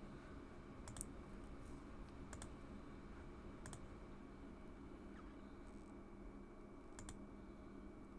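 A few faint computer mouse clicks, each a quick pair, spaced a second or more apart, over a steady low hum.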